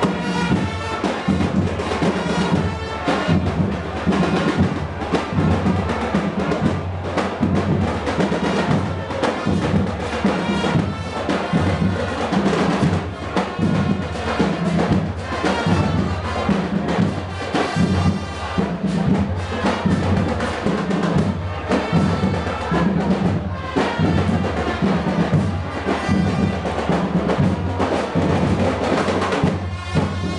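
Marching band playing a loud, continuous piece: snare and bass drums beating a steady rhythm under brass.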